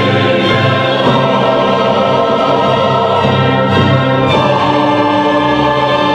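Mixed choir singing with an orchestra in sustained chords. The harmony moves to a new chord about a second in and again a little after four seconds.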